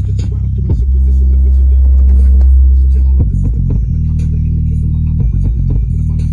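JBL Boombox 2 portable speaker playing a bass-only hip-hop track at maximum volume on mains power. Loud, deep sustained bass notes, one held for about two seconds, are broken by short hits between notes.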